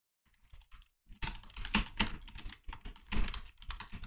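Typing on a computer keyboard: a few light keystrokes, then a quick, steady run of key clicks from about a second in.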